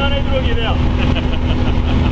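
Steady drone of a Cessna 182's piston engine and propeller, heard from inside the cabin, with a man's voice over it in the first second.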